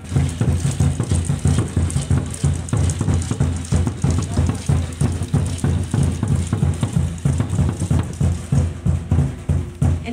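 Large upright wooden ceremonial drum beaten by hand in a steady, unbroken rhythm of deep beats.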